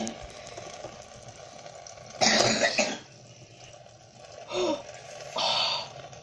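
A person coughing and clearing their throat: a harsh cough about two seconds in, a short vocal grunt, and another cough near the end.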